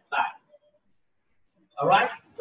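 Two short, sharp vocal bursts right at the start, about a third of a second apart, then a louder one near the end.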